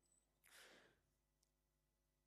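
Near silence: room tone, with one faint breath about half a second in.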